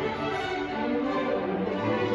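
A string orchestra of violins, violas, cellos and double basses playing, with sustained bowed notes.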